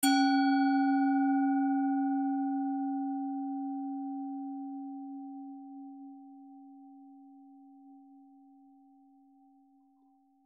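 A singing bowl struck once, its low tone ringing on and slowly dying away while the higher overtones fade within the first couple of seconds.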